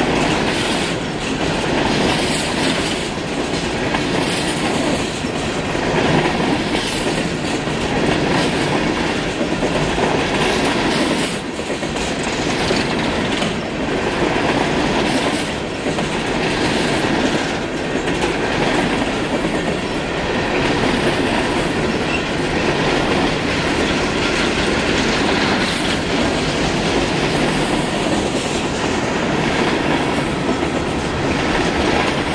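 Union Pacific coal train's hopper cars rolling past close by: a steady loud rumble and clatter of steel wheels on rail, with clicks as the wheels cross rail joints.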